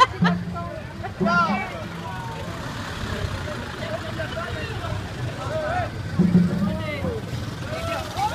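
A large box truck driving slowly past at close range, its engine running with a low, steady rumble, under scattered voices of people standing nearby.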